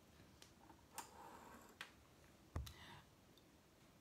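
Near silence: room tone with a few faint clicks, about one, two and two and a half seconds in, the last one with a dull thump.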